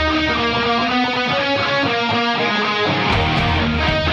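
Electric guitar, a Yamaha Revstar RS720BX, playing a melodic instrumental line of held notes over a backing track with a steady bass. A drum beat comes in about three seconds in.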